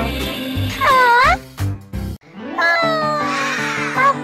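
A cat meowing a few times over background music: one call dips and rises about a second in, and later calls fall in pitch.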